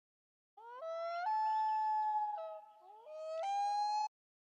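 An animal's long wailing call: held notes that break upward in pitch, sag in the middle and rise again, ending abruptly.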